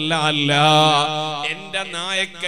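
A man's voice chanting in a melodic, drawn-out style, holding a wavering note for about a second before it breaks off.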